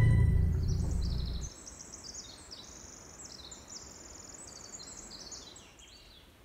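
A music track's tail dies away over the first second and a half. Then a faint songbird sings a long, rapid, high-pitched run of trills and chirps, stopping shortly before the end.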